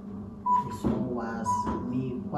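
Digital kitchen scale beeping twice, about a second apart, with voices in between.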